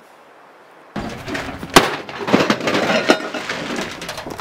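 Clattering and knocking begin about a second in, with one sharp crack, the loudest sound, a little under two seconds in, followed by a few lighter knocks.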